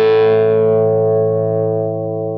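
Distorted electric guitar chord from a Gibson Les Paul through a Bad Cat Fat Cat amplifier with OCD overdrive and TC Flashback delay, ringing out after being struck. Its bright upper overtones fade over about two seconds while the low notes keep sustaining.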